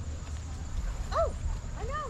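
Indian peafowl (peacock) giving short honking calls that rise and fall in pitch: one loud call about a second in, then several quicker ones near the end.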